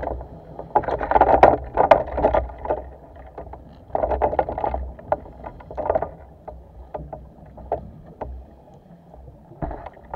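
Underwater bubbling and crackling around a diver and his speargun, heard through a camera housing. Louder bursts come in the first two seconds or so and again about four seconds in, then scattered clicks and ticks over a low rumble.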